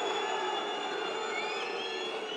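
Stadium crowd noise: a steady din of many voices with several shrill whistles held and gliding above it.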